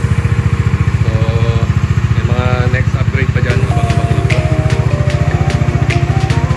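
Kawasaki Dominar 400 UG's single-cylinder engine idling with a rapid, even low pulsing, under music with a sung melody and light percussion.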